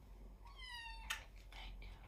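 A kitten gives one short high meow, sliding slightly down in pitch, about half a second in. A sharp click follows right after it and is the loudest moment.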